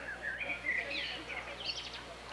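A songbird singing a rapid warbling phrase of quick rising and falling notes that climbs higher near the end.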